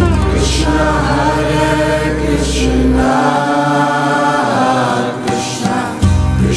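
Kirtan: a group of voices chanting devotional Sanskrit verses over a deep sustained drone. The drone drops out about halfway, leaving the voices and the higher accompaniment.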